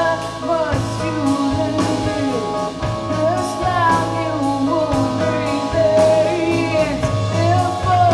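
A rock song with a woman singing over electric keyboard and a drum kit, playing steadily throughout.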